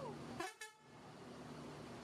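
A Mercedes-Benz coach's diesel engine runs steadily as the bus pulls slowly forward. About half a second in there is a short, sharp sound, followed by a brief dropout.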